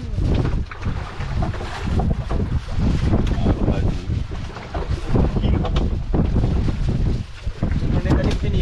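Strong wind buffeting the microphone on an open fishing boat at sea: a loud, gusting low rumble that rises and falls throughout.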